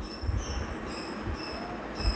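Pen writing on paper, the tip squeaking in short high squeals that come and go with the strokes, over soft low knocks of the hand on the page.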